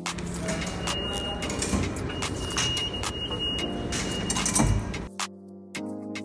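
Loud live noise at an elevated subway station: a low vehicle rumble with clatter and a thin, steady high squeal. About five seconds in, the noise cuts off suddenly and background music with a plucked melody takes over.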